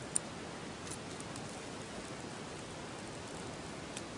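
Steady background hiss, with a small click just after the start and a few faint ticks about a second in.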